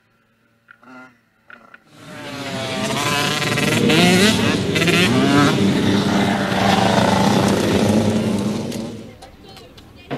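A motocross bike's engine revving hard as the bike rides past close by, its pitch climbing and dropping with the throttle and gear changes. It fades away near the end.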